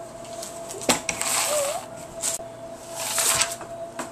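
Rustling paper in short bursts, from a spiral notepad being handled, with a sharp click about a second in.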